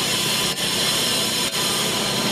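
A power tool running steadily at a construction site, dipping briefly about once a second.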